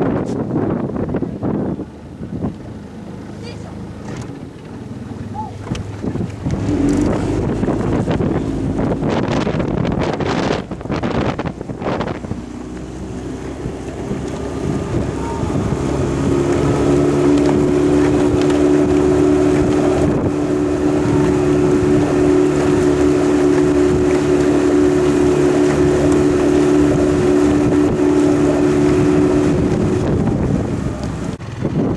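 Outboard motor of a boat following a rowing eight. It settles into a steady hum, louder from about halfway through. In the first half, wind gusts buffet the microphone.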